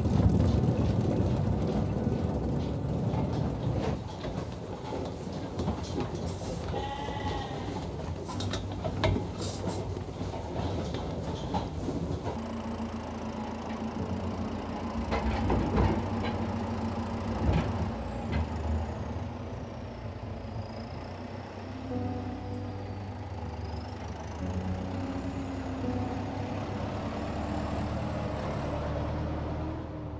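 Hay being pulled and handled in a sheep barn, with rustling and knocking and sheep bleating. From about twelve seconds in, a tractor's engine runs steadily with a low hum.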